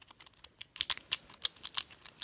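Lock pick worked back and forth in the keyway of a Chateau C970 discus padlock under a tension wrench: rapid, irregular small metal clicks, faint at first and louder from about the first half-second on.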